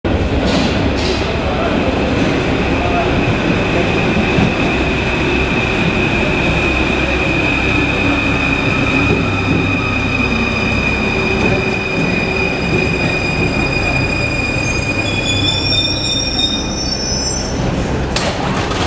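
An MF 01 Paris metro train running into the station on steel wheels, with steady running noise and a high steady whine. Near the end it comes to a stop with several higher, wavering squeals.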